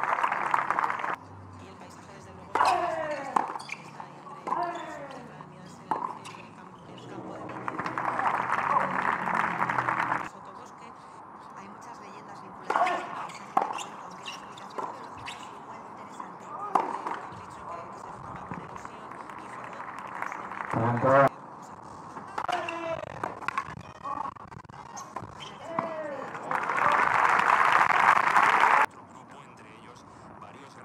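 Tennis match sound: ball strikes and bounces, short calls from voices, and two bursts of spectator applause after points, one about a third of the way in and one near the end.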